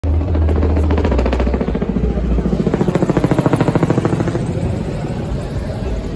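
Helicopter rotor beating in a fast, even rhythm over a low rumble, strongest through the first four seconds and then fading.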